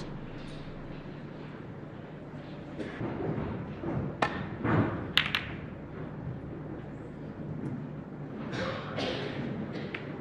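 Snooker balls clicking against each other a few times, once about four seconds in and twice in quick succession about a second later, over the low hum of a quiet arena.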